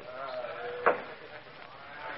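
A single sharp rap for order about a second in, over men's voices in a room.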